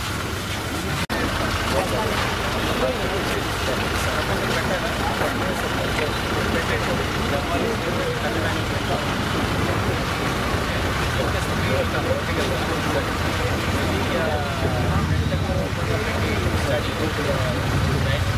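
Overlapping chatter of several people talking at once over a steady low rumble, with a brief dropout about a second in.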